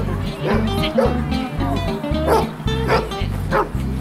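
A dog barking repeatedly, about every half second to second, over background music with a steady beat.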